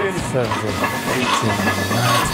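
Several people shouting encouragement to a lifter mid-set, with music playing underneath.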